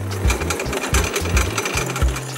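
A fast, steady mechanical rattle lasting almost two seconds, over background music with a bass line.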